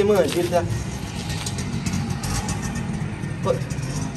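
A few words of speech, then a steady low outdoor rumble with a faint crackle and a brief swell about halfway through.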